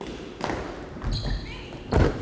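Sneakers running across a wooden gym floor in a series of footfalls, with a loud thud near the end.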